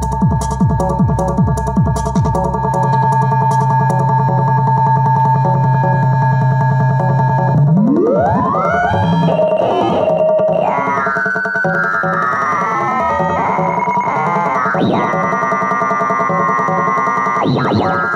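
Korg Electribe R mkII drum machine playing a tekno pattern. A steady kick drum at about two beats a second drops out about three seconds in, leaving held electronic tones. From about eight seconds in, swept synth sounds glide up and down in pitch.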